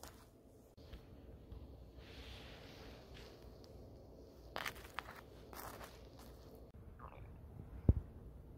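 A metal spoon scraping soft roasted bone marrow and spreading it on toasted bread: quiet scrapes, with a few sharp clicks about halfway through. One low thump, the loudest sound, comes near the end.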